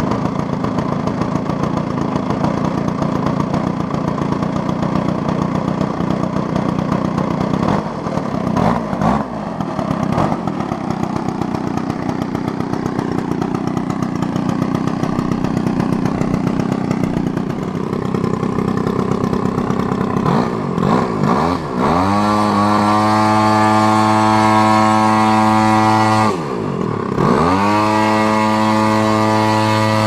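RCGF 55cc two-stroke petrol engine in a large-scale model P-51 Mustang, running rough and uneven at low throttle. About 22 s in it is opened up to a high, steady run. Near the 26–27 s mark the throttle is briefly pulled back and opened again.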